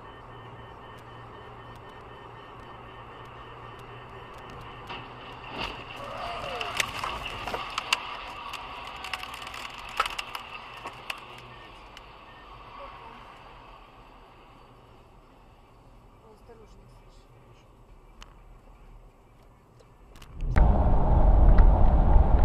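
Car interior road noise picked up by a dashcam on a highway. A cluster of sharp knocks and clicks comes in the middle while a car crashes ahead. Near the end it cuts suddenly to much louder, low rumbling road and engine noise.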